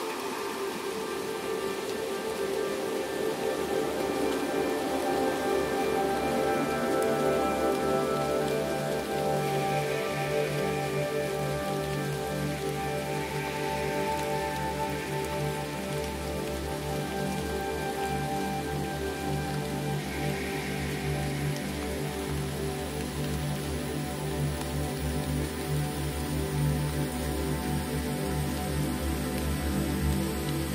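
Slow ambient synthesizer pads holding long, sustained chords over a steady recording of falling rain, with a low drone filling in a few seconds in.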